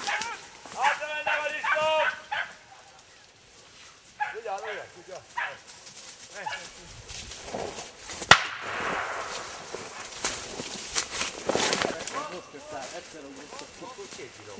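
Hunting dogs barking and beaters calling out as they push through brushwood, with dry leaves and twigs rustling. A single sharp crack comes about eight seconds in.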